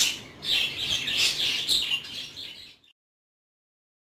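Small birds chirping in quick repeated calls, about two a second, until the sound cuts off abruptly to silence about three seconds in.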